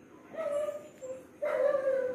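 A dog whining in a few short pitched calls, the last one longer and louder.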